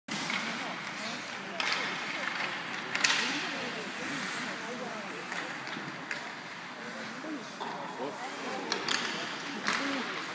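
Ice hockey game: players' indistinct voices calling out over a steady rink noise, with several sharp knocks of sticks and puck. The loudest knock comes about three seconds in, and a cluster of them falls near the end.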